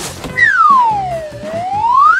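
A single whistle-like tone that swoops smoothly down in pitch and back up again, lasting about two seconds, over background music.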